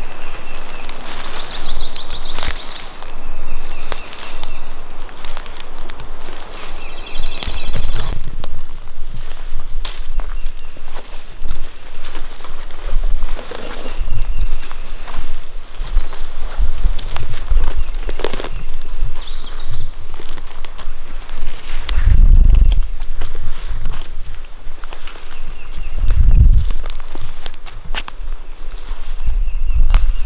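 Footsteps of two people walking through forest undergrowth and leaf litter, with brush rustling against clothing and gear. Two heavy low thumps come later on.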